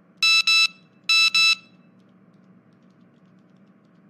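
Mobile phone text-message alert: two quick pairs of electronic beeps about a second apart, over a faint steady hum.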